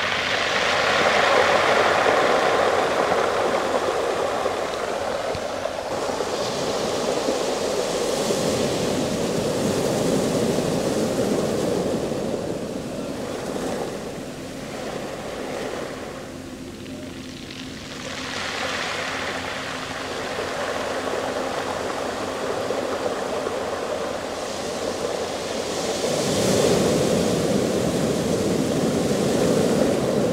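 Small waves washing up and drawing back over a shingle beach of rounded pebbles, the water pulling the stones down with it. The surf swells and eases in long surges, dropping to a lull a little past halfway before building again.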